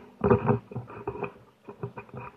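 Close, irregular scuffing and rubbing from the 360 camera being handled and turned: a cluster of loud scrapes in the first second, then a few shorter scuffs near the end.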